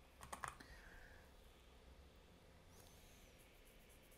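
Near silence, with a few computer keyboard keystrokes clicking about half a second in and faint key taps later.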